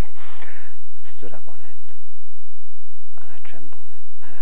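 Only speech: a man talking, with a pause of about a second midway.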